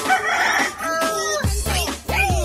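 Background music whose bass beat drops out for about a second and a half, under a long, high animal cry that falls in pitch at its end; the beat then comes back in.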